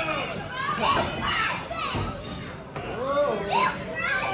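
Small crowd of spectators, children's high voices among them, shouting and calling out over one another.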